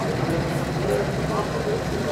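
M151 military jeep's four-cylinder engine idling steadily, with voices talking over it.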